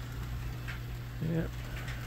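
N-scale model freight train running on the layout: a steady low hum with faint scattered clicking from the wheels on the track.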